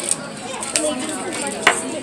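Voices chatting at a restaurant table, with one sharp click of tableware about one and a half seconds in.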